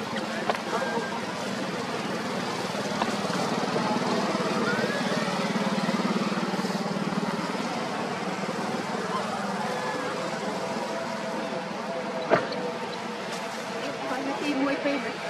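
Steady engine noise from a motor vehicle, with a single sharp click near the end.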